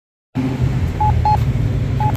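Campbell Guardian accessible pedestrian signal push button sounding its locator tone: a pair of short, high beeps about a second in. This is the repeating tone that lets pedestrians find the button. Under it runs a steady low traffic rumble.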